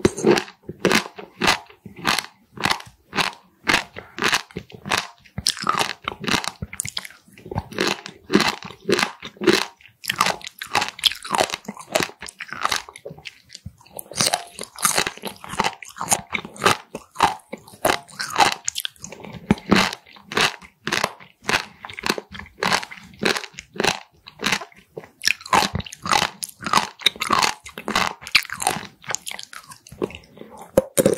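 Raw warty sea squirt (Styela plicata) being chewed close to the microphone, its firm, rubbery flesh crunching and squelching in a steady run of bites, about two to three crunches a second.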